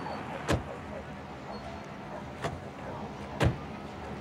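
Car doors being shut on a sedan: three sharp thumps, the loudest near the end, over a steady low street background.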